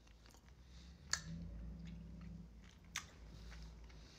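Faint close-up chewing of a soft gummy candy, with a few sharp wet mouth clicks, the clearest about a second in and again near the three-second mark.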